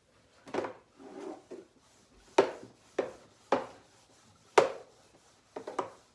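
A whiteboard eraser wiped across a dry-erase board in about eight short, uneven strokes, each sharp at the start and fading quickly.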